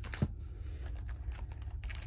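Small plastic clicks and taps from handling a plastic packaging tray and a plastic deck box, with one sharper click about a quarter second in, over a low steady hum.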